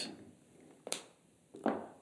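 A single short, sharp click about a second in, against quiet room tone, followed by a soft breath just before talking resumes.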